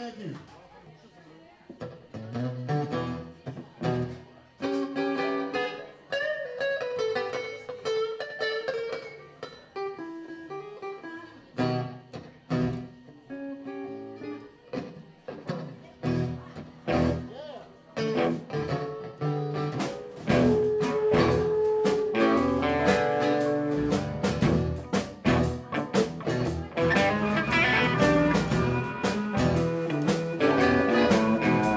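A live blues band playing a song, led by guitar. It starts fairly quietly with picked guitar notes, and about twenty seconds in the band comes in fuller and clearly louder.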